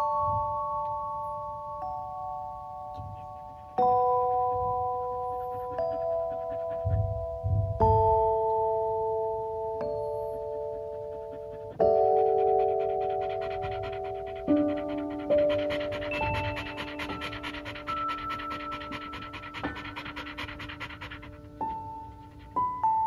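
Background music of soft mallet-like chime chords throughout. From about halfway in, an Australian Shepherd pants rapidly over it, still unsettled by the fireworks.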